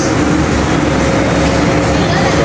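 Steady low rumble with a faint constant hum from the refrigerated display cases and store ventilation.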